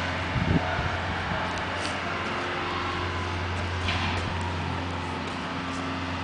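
Steady outdoor background noise: a constant low hum under an even wash of sound, with a few faint, brief sounds and no distinct event.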